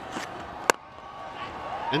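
A cricket bat striking the ball: one sharp crack about two-thirds of a second in, over faint crowd noise.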